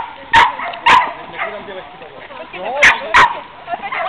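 Dog barking in short, sharp barks: a quick run of three in the first second and a half, a gap, then two more close together near the end.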